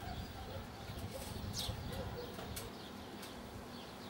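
Outdoor birds calling: a few short, high chirps that fall in pitch, about a second apart, over a low rumble.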